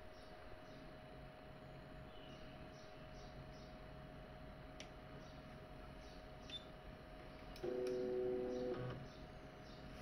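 Palstar HF-Auto tuner's stepper motors driving its capacitor and roller inductor to new settings: a steady two-pitch motor whine of about a second near the end, as the tuner retunes for a new band. Beneath it, a faint steady hum and a few light ticks.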